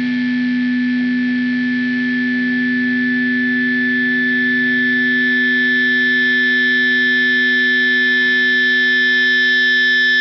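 Distorted electric guitar chord held and left ringing at the end of a post-hardcore rock song, growing slightly louder as it sustains.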